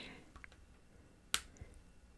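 A single short, sharp click a little past the middle of an otherwise quiet pause, with a few fainter ticks around it.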